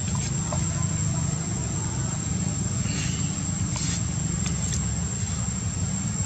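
Outdoor ambience: a steady low rumble with a thin, steady high-pitched whine above it, and a few brief rustles and ticks.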